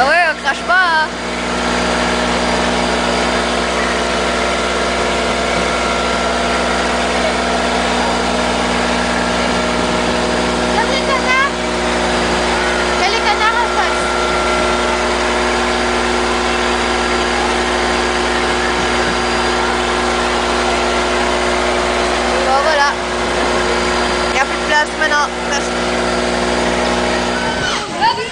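Tour boat's motor running at a steady, unchanging drone. A young child's voice breaks in a few times over it.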